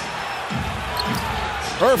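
A basketball dribbled several times on a hardwood court, a run of low bounces.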